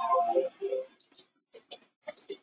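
A short murmur of a voice in the first second, then a few separate sharp clicks of computer keyboard keys as a password is typed in.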